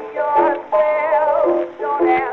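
A 1920s blues record: a woman singing with vibrato over instrumental accompaniment. The sound is muffled and narrow, typical of a record of that era.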